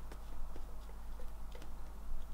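A watercolour brush dabbing on paper, making a few irregular light ticks, over a steady low hum.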